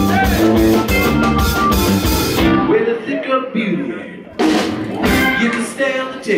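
Live band playing with electric and acoustic guitars, bass and drum kit. About halfway through, the drums stop for a break of about two seconds, leaving quieter bending notes, then the full band comes back in.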